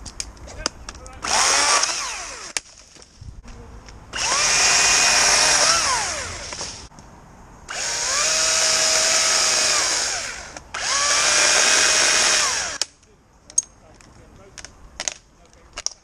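Echo DCS-2500T battery top-handle chainsaw cutting branches in four bursts. Each burst has a high electric whine that winds up at the start and winds down when the trigger is released. A few sharp snaps and clicks follow near the end.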